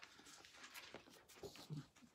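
Near silence with faint rustling and small clicks of thin Bible pages being leafed through, and a faint murmur of voice near the end.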